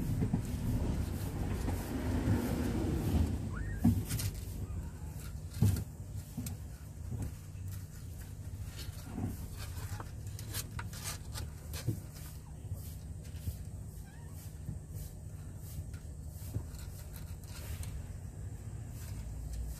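Steady low background rumble with scattered small knocks and clicks; the sharpest knocks come about four and six seconds in.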